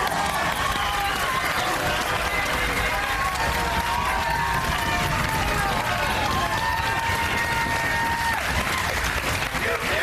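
Studio crowd cheering, shouting and clapping together in a continuous celebratory din, with several voices holding long shouts over the applause.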